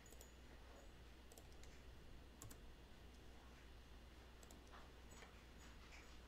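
Near silence with a low steady hum and a few faint, irregular clicks from computer use, the clearest about two and a half seconds in.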